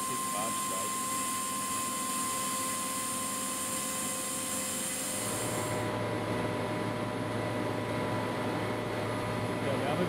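Steady hum and hiss of running compressor plant machinery, with a few steady tones. About five and a half seconds in, the sound changes: the high hiss drops away and a lower hum takes over.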